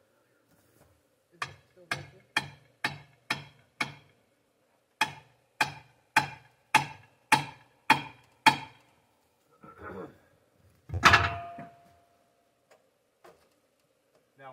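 Hammer blows driving a wedge into the saw kerf of a pine log, opening the cut to free a pinched bandsaw-mill blade so the carriage can be backed out: six strikes, a pause, then seven more at about two a second. About eleven seconds in comes a single louder clank with a brief metallic ring.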